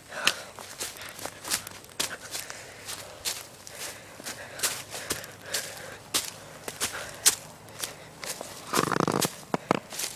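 Footsteps walking up a forest trail, crunching irregularly over leaf litter, twigs and dirt with a few clicks a second, and a louder short rush of noise about nine seconds in.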